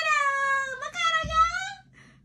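A woman's high-pitched excited squeal, stretched into two long held notes, the second sinking slightly at the end.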